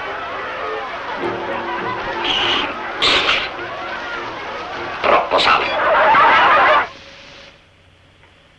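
Film soundtrack: fading music under unclear voices and noise, with loud bursts about two, three and five seconds in. A loud noisy stretch follows and cuts off suddenly about seven seconds in, leaving quiet.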